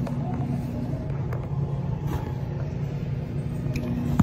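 Muffled low rumble of fingers rubbing over a phone's microphone, over a steady low hum, with a few faint clicks.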